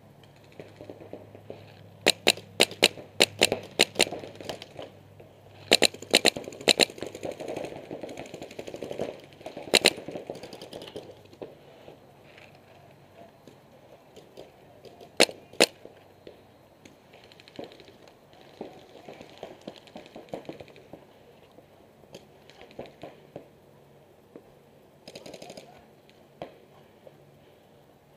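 Paintball markers firing: quick strings of sharp shots in the first few seconds, a lone shot, then a pair of shots, with fainter scattered pops later on.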